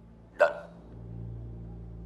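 A man's single short vocal huff, like a scoff, about half a second in, over a steady low hum.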